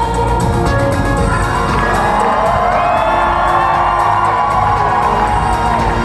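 Loud live concert music with a steady beat in a break between sung lines, with the audience cheering over it from about two seconds in.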